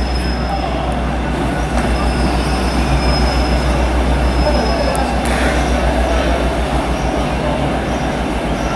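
Passenger train coaches rolling slowly out of the platform: a steady low rumble of running gear, with faint high wheel squeals on and off.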